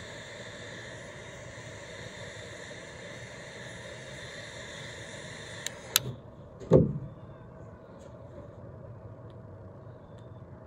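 Butane torch lighter's jet flame hissing steadily as it lights a cigar, cut off with a click about six seconds in. Less than a second later comes a louder thump, which fits the lighter being set down on the table.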